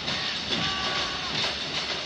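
Steady crowd noise filling a basketball arena during live play, with faint higher tones in the middle.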